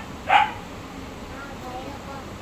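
A dog barks once, a short sharp bark about a third of a second in.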